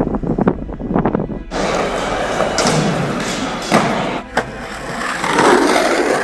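From about a second and a half in, skateboard wheels roll on pavement as a steady rumbling hiss. Two sharp clacks of the board come a little under a second apart, around four seconds in.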